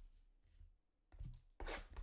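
A shrink-wrapped trading card box being picked up and handled. There is a short knock about a second in, then a rough rustle of the box and its wrapper near the end.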